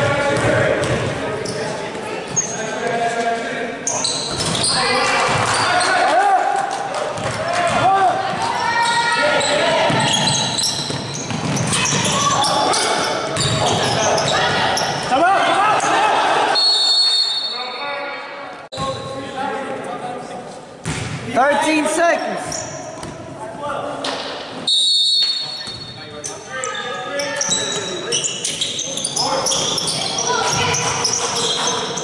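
Players and spectators shouting in an echoing gymnasium during a basketball game, with a basketball bouncing on the hardwood. A referee's whistle blows two short blasts, a little over halfway through and again about 25 seconds in.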